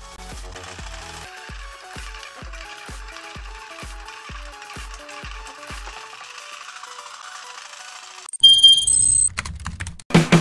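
Homemade battery saw built from an air freshener's motor and gears, running with a steady rattle. Soft background music with a slow beat plays beneath it. A loud electronic sting cuts in near the end.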